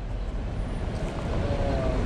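A car driving past at low speed: a steady rumble of engine and tyres that grows slightly louder, with a faint whine near the end.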